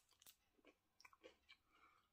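Very faint chewing of a crispy cookie-filled chocolate bar, heard as a few soft, scattered crunches and mouth clicks.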